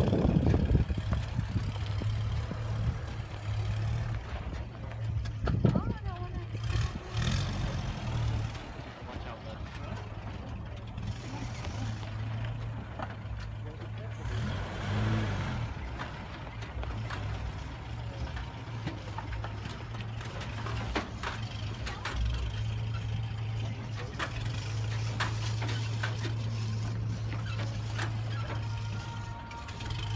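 Toyota pickup's engine running steadily at low revs while crawling over rock, rising briefly a few times, with scattered light clicks and knocks.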